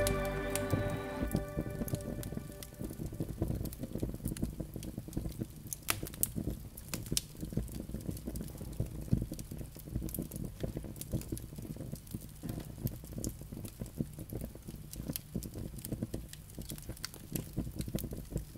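Campfire crackling: irregular pops and snaps over a low rumble, as music fades out in the first second or two.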